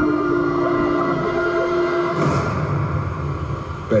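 Film trailer score playing through a television: low sustained chords held steady, with a brief hiss about two seconds in.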